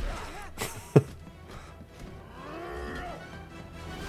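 Cartoon soundtrack: background music with a sharp hit about a second in, the loudest moment, and a shorter knock at the very start.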